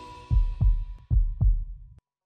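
Outro sound effect over the logo: the last note of the background music fades out while four deep bass thumps sound in two pairs, in a heartbeat rhythm.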